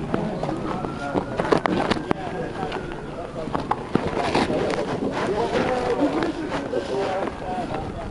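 Indistinct chatter of a group of people talking over one another, with scattered sharp clicks and knocks among it.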